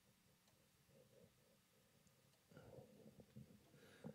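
Near silence: room tone, with a few faint clicks in the second half.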